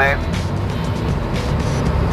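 Sportfishing boat's engine running steadily underway, with the rush of the wake and wind on the open deck.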